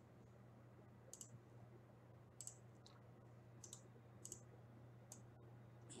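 Faint computer mouse clicks, a scattered handful over a few seconds, over a low steady hum.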